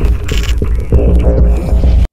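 Loud intro music with heavy, dense bass, cutting off suddenly at the end.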